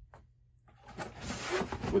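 A cardboard shoe box being pulled down from a stack on a shelf. A scraping, rustling noise starts about two-thirds of a second in and grows louder.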